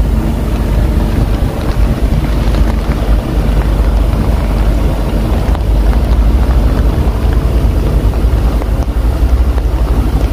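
Wind buffeting the microphone: a loud, steady, rough low rumble.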